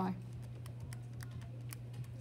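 Keys of a TI-84 Plus CE graphing calculator being pressed: a quick run of light clicks, several a second, as a multiplication is keyed in and entered. A steady low hum runs underneath.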